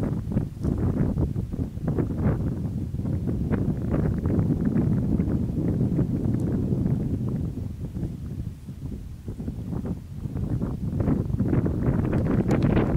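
Wind buffeting the microphone in a steady low rumble, with scattered light clicks and rustles from hands picking small shells out of dry grass.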